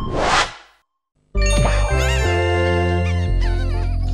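A short whooshing noise that fades out, a moment of silence, then the bouncy jingle of a 1990s TV channel ident. It has a steady bass line and high, warbling squawks that bend up and down.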